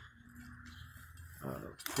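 Mostly quiet background with a low steady hum, broken by a man's short hesitant "uh" a second and a half in.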